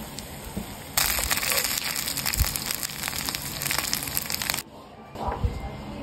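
Beef fried rice being stirred and tossed in a nonstick frying pan: sizzling and crackling with the scrape of a spatula, loud from about a second in until near the end, then quieter with a few soft knocks.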